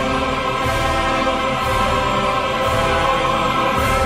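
Operatic chorus and orchestra holding broad sustained chords, with a recurring accent about once a second.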